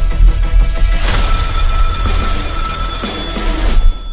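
Dramatic trailer music with a heavy bass pulse; about a second in, a telephone starts ringing over it with a steady high electronic trill, which stops just before the end.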